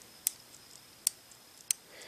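Rotating dive bezel of a Prometheus Manta Ray watch turned one point at a time: three single, sharp clicks, each under a second apart, with almost no play between the points.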